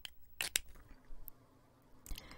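A few short, sharp clicks: one right at the start, a close pair about half a second in, and a fainter one after a second.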